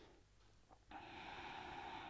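A person breathing through the nose in a forward fold. A breath fades out at the start, there is a brief pause, and a new faint breath begins about a second in.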